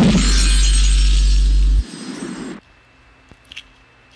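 Digital celebration sound effect played with a live-stream confetti animation: a loud synthetic sound with a deep steady bass tone under a high hiss-like shimmer. The bass cuts off suddenly just under two seconds in, and the shimmer stops abruptly about half a second later.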